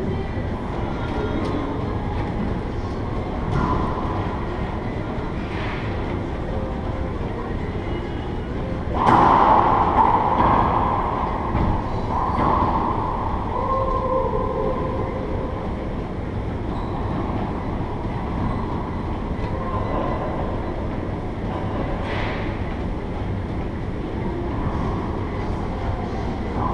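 Steady low rumble of an enclosed racquetball court, with a few sharp, echoing racquetball hits off the walls; the loudest comes about nine seconds in and rings on for a couple of seconds.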